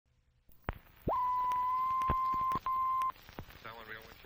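A film-leader test-tone beep: one steady pitch held for about two seconds, broken once by a short gap, over faint evenly spaced clicks like old film crackle.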